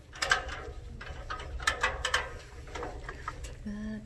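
A damp microfiber cloth rubbing against the plastic and metal of a beam scale in short wiping strokes, in two main bursts about a quarter second in and around two seconds in, over a steady low hum.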